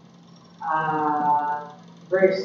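A man's voice holding a drawn-out hesitation sound, a steady 'uhh', for about a second, starting about half a second in.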